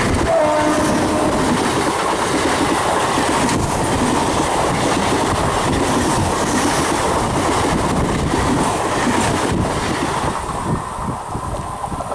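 A train passing close by: a loud, steady rumble and rattle of its cars running on the rails, easing off slightly near the end.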